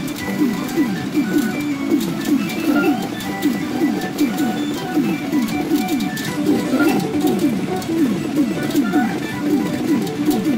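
Pachinko machine and parlour sound: a fast, unbroken run of short falling electronic tones, several a second, over a constant fine clatter of steel balls.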